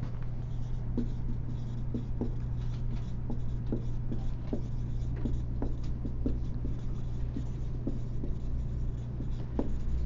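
Writing, heard as short, irregular scratching and tapping strokes about one or two a second, over a steady low hum.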